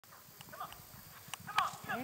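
Hoofbeats of two horses moving over grass, an irregular patter of low thuds, with a couple of sharper clicks about a second and a half in.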